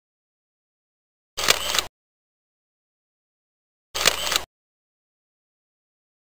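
The same short sound effect, about half a second long, sounds twice, about two and a half seconds apart, with dead silence between. It is an edited-in slideshow transition sound.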